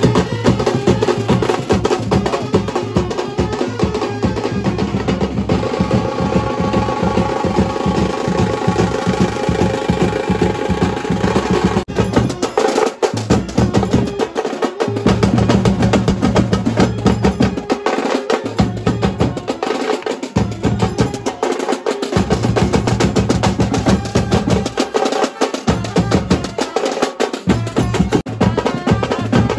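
Marching brass band drumming: several snare drums beating fast, driving rolls over a bass drum, with a trumpet melody on top mainly in the first half. The bass drum drops out briefly several times in the second half while the snares carry on.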